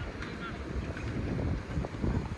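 Wind buffeting the microphone in uneven gusts, a low irregular rumble.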